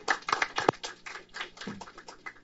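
Scattered hand clapping from an audience, irregular claps that are thickest in the first second and thin out toward the end.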